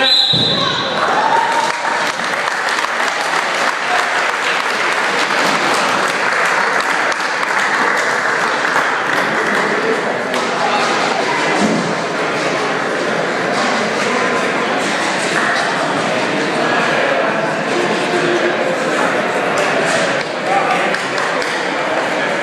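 Crowd of spectators and teammates shouting and cheering, many voices overlapping, echoing in a school gymnasium, with scattered claps and thumps.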